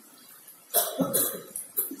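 A man coughing a few times in short, loud bursts, starting about three-quarters of a second in.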